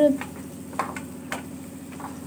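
A cooking utensil knocking against a metal pan about three times, with faint frying sizzle and a low steady hum underneath.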